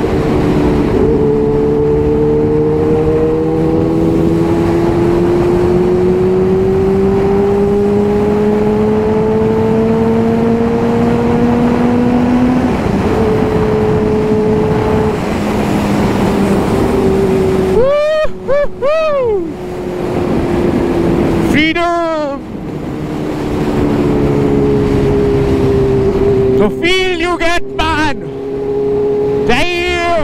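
Kawasaki Ninja H2's supercharged inline-four running under way, its pitch climbing slowly for about twelve seconds and then dropping at a gear change, with wind rushing over the microphone. In the second half the throttle is blipped four times, the revs shooting up and falling straight back.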